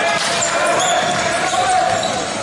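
Basketball being dribbled on a hardwood gym court under a steady, echoing hubbub of voices from players and spectators, with a few short sneaker squeaks.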